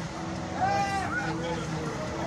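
A person's voice, loudest about half a second to a second in, over a steady low hum.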